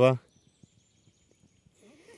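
The last syllable of a man's word, then a faint, thin, high bird call held for about a second, with faint ticks from a smoking campfire and a soft rustle near the end.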